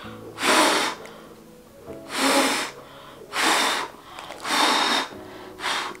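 A person blowing hard through an N95 respirator at a lighter flame: five forceful breaths about a second apart, the last one short. The flame stays lit, so the mask is stopping the airflow.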